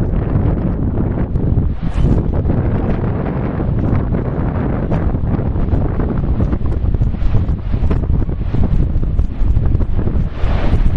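Strong wind buffeting the microphone, a loud, uneven rumble that rises and falls in gusts.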